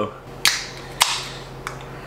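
Aluminium beer can opened by its pull tab: a sharp crack about half a second in trailed by a short hiss of escaping gas, a second sharp snap about a second in, and a fainter click near the end.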